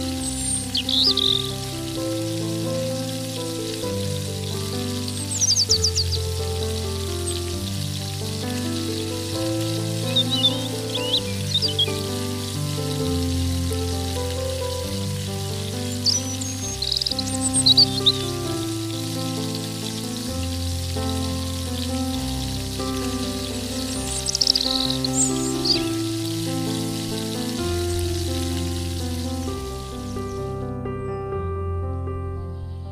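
Soft instrumental background music over the steady hiss of small stuffed parathas deep-frying in hot oil. Brief bird chirps come in a few times.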